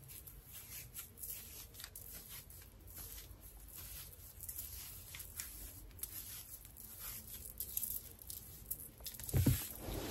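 Hands separating and fluffing twisted natural hair close to the microphone: soft, irregular rustling and crackling of the strands. A brief low sound comes near the end.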